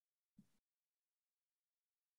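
Near silence: the sound track is dead quiet, with only a very faint, brief blip about half a second in.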